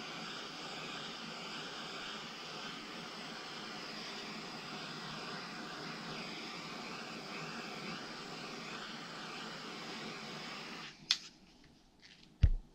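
Handheld gas torch burning with a steady hiss as its flame scorches the wood of a miniature dresser. The hiss cuts off suddenly near the end and is followed by a single sharp click.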